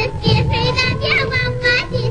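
A young girl singing an Azerbaijani folk children's song, with instrumental accompaniment underneath.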